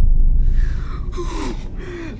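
A deep rumbling effect dies away in the first half second. Then people gasp and pant for breath, short breathy gasps after a narrow escape.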